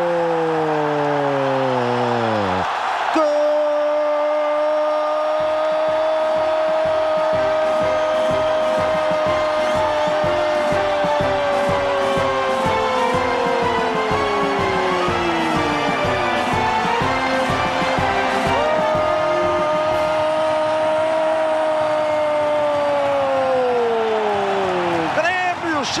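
Brazilian TV football commentator's drawn-out goal scream, "Gooool", held on one high pitch for many seconds and falling away at the end of each breath. There are three held calls in all, the longest about thirteen seconds, over a rhythmic beat.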